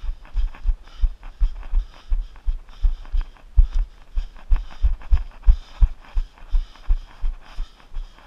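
Running footsteps thudding in a steady rhythm of about three strides a second, picked up as jolts through a body-worn camera, with the runner's hard breathing between them.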